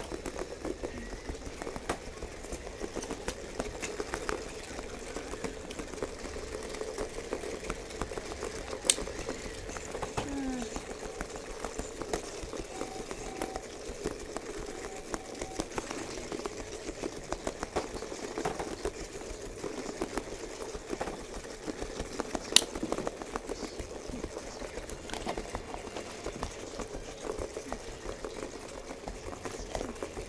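Battery-powered spiky toy balls rolling on carpet, their small motors running with a continuous rapid rattling clatter. Two sharp knocks stand out, about 9 and 22 seconds in.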